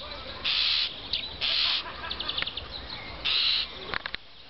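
Common starling calls: three harsh, hissing screeches, each about a third of a second long, with short, rapid clicking rattles between them.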